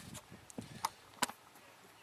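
A few faint clicks and knocks as a small metal can of paraffin wax is handled, the sharpest about a second and a quarter in.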